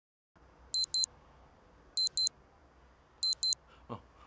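Electronic alarm beeping in pairs of short, high-pitched beeps, three pairs a little over a second apart, over faint room noise. It marks ten o'clock.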